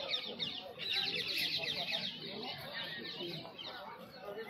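A flock of birds chattering, many short chirps overlapping at once, thickest in the first half and thinning toward the end, over a murmur of distant voices.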